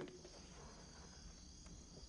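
Faint, steady chirring of crickets at night.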